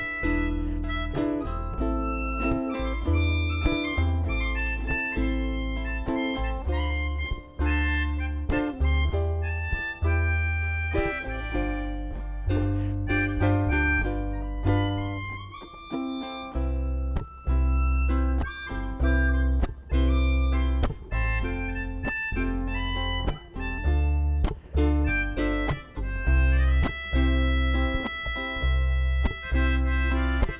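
Melodica playing a sustained melody line, with bass and a steady beat underneath.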